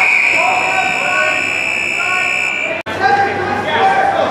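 Scoreboard buzzer sounding one steady, high electronic tone as the clock hits zero, marking the end of the wrestling period. It cuts off about two and a half seconds in.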